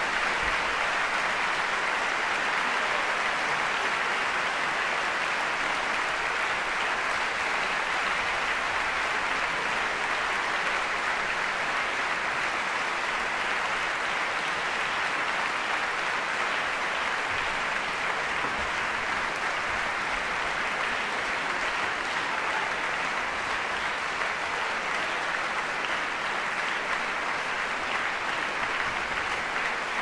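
Audience applauding after an orchestral performance, a dense, steady clapping that keeps up at an even level.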